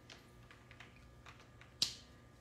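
Faint light ticks of a felt-tip marker and hand against sketchbook paper, with one sharper click near the end.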